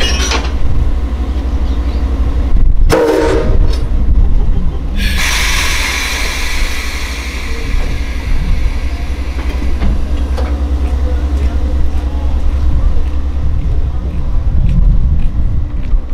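A JNR Class 9600 steam locomotive worked on compressed air instead of steam. Air hisses from it in short bursts, then a long loud hiss starts about five seconds in and fades over a few seconds, over a steady low rumble.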